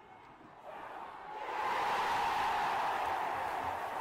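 An intro sound effect for an animated logo: a rushing swell of noise that builds over the first two seconds, then slowly fades.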